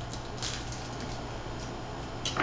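A table knife scraping as it spreads on bread on a plastic plate: a few short scrapes, the clearest about half a second in, over a steady low hum.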